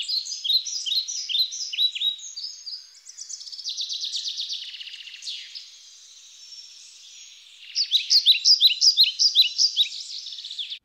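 Birdsong: quick series of short, high chirps, a fast trill in the middle, then a louder run of chirps over the last couple of seconds.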